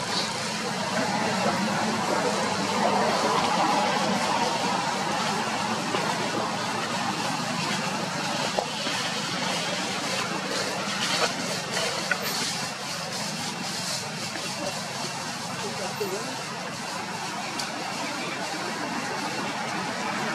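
Steady outdoor background of indistinct human voices and motor-vehicle traffic, with a few faint clicks near the middle.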